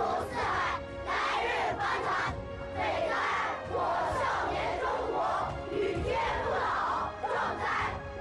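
A large group of children reciting in unison, loud choral speech in short phrases with brief pauses between them, over background music with a steady held note.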